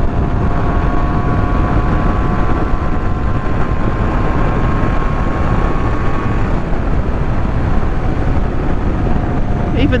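A 1984 Honda NS250R's two-stroke V-twin engine runs at a steady cruise under heavy wind rush on the microphone. Its thin, steady note fades back about two-thirds of the way through.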